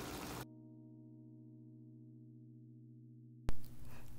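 A faint, steady electronic hum of several low tones, with no room sound behind it, broken off by a sharp click near the end.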